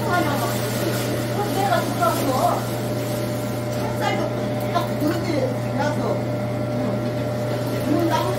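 Electric food grinder's motor running with a steady low hum and a thin steady whine above it, while pear, apple and radish are fed through it; women talking over the machine.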